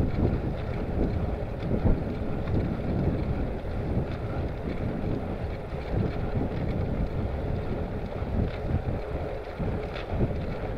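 Wind buffeting the microphone of a handlebar-mounted camera on a moving bicycle: a steady, uneven low rumble.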